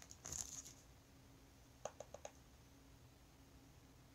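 Near silence with a short soft hiss at the start, then four small, quick clicks about two seconds in from a makeup brush and cardboard highlighter palette being handled.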